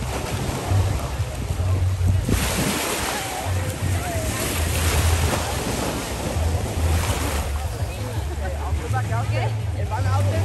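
Ocean surf washing against a rocky shore, swelling into a loud hiss from about two seconds in and easing off around seven seconds, with gusty wind buffeting the microphone throughout.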